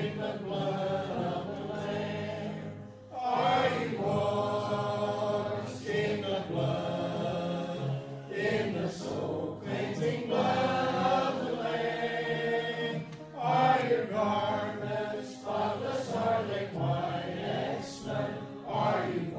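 Congregation singing a hymn together, voices moving in sung lines with short pauses between them.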